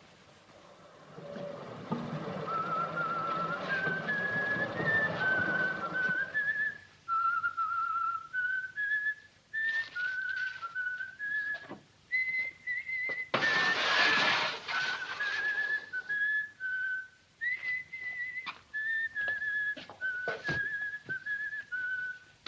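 A person whistling a cheerful tune with a slight warble, note by note, through most of the stretch. Early on a steady rumble runs under it for several seconds, about halfway a short loud rush of noise cuts in, and light knocks and thuds come and go in the later part.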